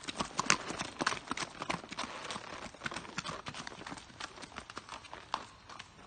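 Horses' hooves on a gravel road, a quick uneven run of hoofbeats from more than one horse walking, growing fainter near the end.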